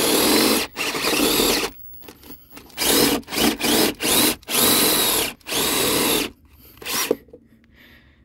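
Power drill boring through wood with a step drill bit, run in about eight short bursts of a second or less with brief pauses between them, the last about seven seconds in.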